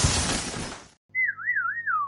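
Cartoon sound effects: the noisy tail of a cartoon explosion fades out over the first second, then a wobbling whistle warbles about three times and slides down in pitch over a low steady drone, a dazed, dizzy-sounding effect.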